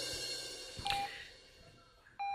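Hospital patient monitor beeping: one short, steady electronic beep about a second in, part of a regular beep roughly every second and a half, over a fading background.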